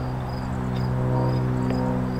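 Insects chirping in short, evenly repeated high pulses, about three a second, over a steady low mechanical hum with even overtones, like an engine idling.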